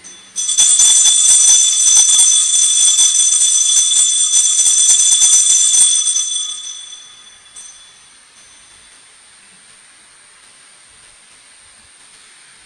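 Altar bells shaken in a rapid, continuous peal at the elevation of the consecrated host, marking the consecration. The high, bright ringing starts about half a second in, lasts about six seconds, then dies away.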